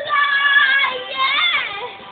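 A young girl singing long, high, held notes over music, the voice wavering and sliding in pitch about one and a half seconds in, then fading near the end.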